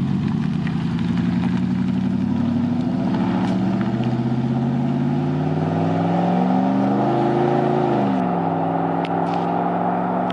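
Pickup truck with dual exhaust pulling away and accelerating, its engine note climbing steadily through the gear, then dropping suddenly with an upshift about eight seconds in.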